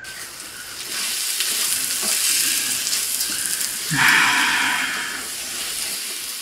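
Rice and beaten egg sizzling in a hot wok while being stirred with a wooden spoon. There is a louder stretch about four seconds in.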